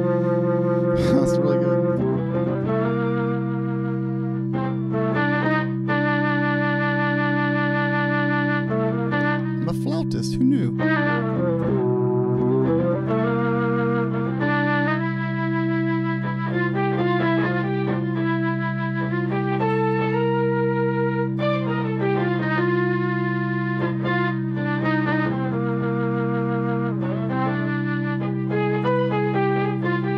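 Electric guitar played through an Electro-Harmonix Mel9 tape-replay (Mellotron-emulating) pedal, giving slow sustained chords with an organ-like tone that change every second or two over low notes held throughout.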